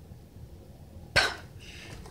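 A single short cough a little over a second in, against quiet room tone.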